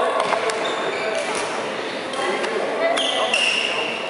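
Badminton rackets striking a shuttlecock several times in a rally, with shoes squeaking on the wooden court floor near the end, in an echoing sports hall.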